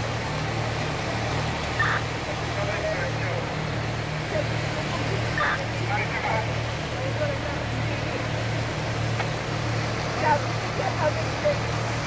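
A fire engine's engine running steadily with a low, evenly pulsing drone as it pumps water to the hose lines, under faint scattered voices.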